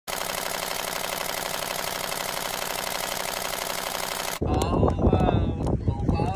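A dense, even rapid clatter that cuts off abruptly about four and a half seconds in. After it, a group of people talk and laugh over a crackling campfire.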